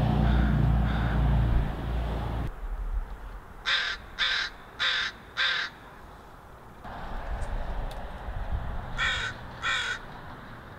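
A crow cawing: four caws in quick succession a few seconds in, then two more near the end. Before the caws, a low rumble cuts off suddenly about two and a half seconds in.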